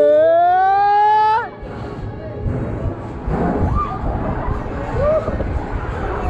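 Fairground ride music: a loud held note that rises in pitch and cuts off suddenly about a second and a half in. After it, wind rumbles on the action camera as the ride swings, with a few short shouts from riders.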